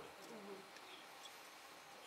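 Near silence: room tone, with a brief faint murmur near the start.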